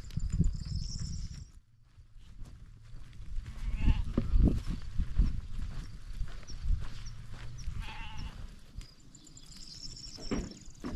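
Sheep bleating twice, about four and eight seconds in, over wind rumbling on the microphone.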